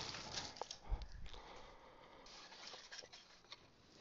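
Faint handling sounds of a paper box and a roll of double-sided tape on a cutting mat: a light knock about a second in, a soft rustle and a few small taps.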